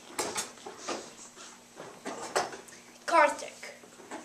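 Glue sputtering in short sharp puffs and clicks as a glue bottle is squeezed upside down. A child's voice makes a brief sound about three seconds in.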